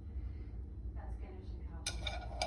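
Quiet kitchen handling over a steady low hum: cooked ground turkey being dropped by hand into a glass baking dish, with a faint soft sound about a second in and one sharp click of glass near the end.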